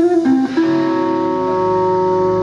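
Electric guitar through an amplifier playing a couple of quick notes, then letting one note ring out steadily.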